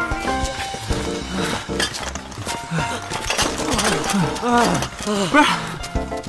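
Background music, and in the second half men's heavy panting and groaning: a string of short voiced gasps, each falling in pitch, from runners worn out by an uphill race carrying rifles.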